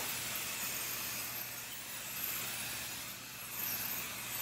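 Aerosol can of temporary basting spray adhesive hissing steadily as it is sprayed over the centre of a quilt layer, dipping briefly about three seconds in.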